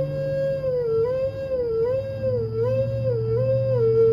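End-blown flute holding one note and sliding down and back up about five times in a steady wavering pattern, settling on a lower held note near the end. Underneath, a low note from a looped Rav Vast tongue drum keeps ringing.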